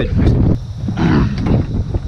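A person's voice making two drawn-out wordless sounds, like groans, over wind rumbling on the microphone.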